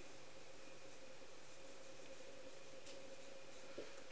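Faint strokes of a dry-erase marker on a whiteboard, over a steady faint hum, with a small click near the end.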